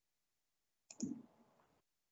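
Near silence, broken about a second in by a sharp double click with a short dull tail that fades within a second.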